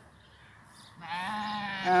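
A sheep bleating: one long, steady bleat starting about a second in.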